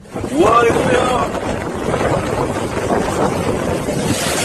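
Loud, steady rush of wind buffeting the microphone over surging sea water, starting suddenly, with a person's rising exclamation in the first second.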